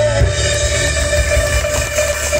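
Live band playing the closing bars of a Hokkien pop song. A held, wavering note ends just after the start, and the chords and bass carry on.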